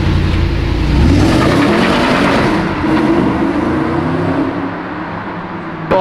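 Audi R8 engine revving hard as the car pulls away, rising in pitch, then fading as it moves off.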